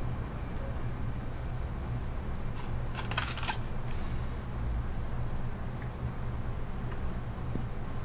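Steady low room hum, with a brief flurry of small clicks about three seconds in.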